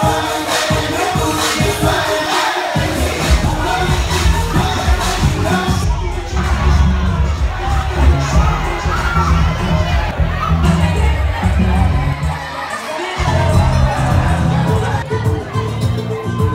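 A crowd of young people shouting and cheering over loud dance music with a heavy bass beat. The mix changes abruptly about six seconds in and again around thirteen seconds.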